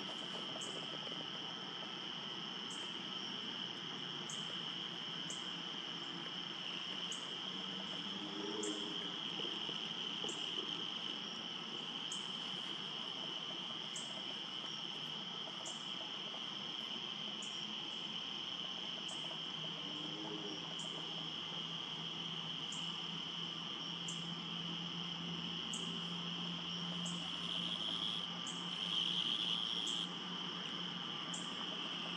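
Steady, high-pitched trilling of insects, with a faint high tick repeating about once a second.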